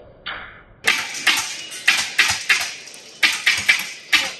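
Wolverine HPA airsoft shotgun firing a rapid, irregular string of sharp shots, about four a second, starting about a second in, after a couple of duller, muffled knocks.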